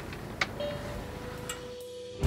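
Quiet on-deck ambience of a sailboat under sail with its engine off: a soft, even noise of wind and water, with a single click about half a second in. A faint held musical note comes in soon after.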